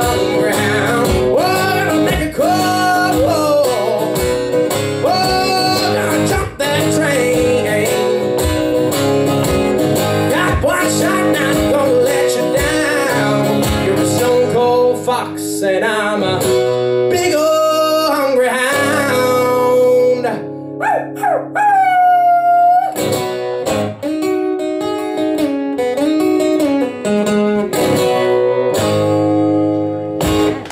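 Live solo blues-rock song: a male singer with a strummed steel-string acoustic guitar. About two-thirds of the way through he holds one long high note that bends upward.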